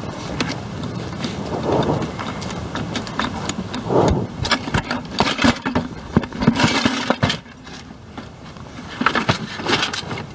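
Scrap metal clinking and rattling in a bucket as it is carried and loaded into a car's cargo area, with a steady run of small knocks and clatters.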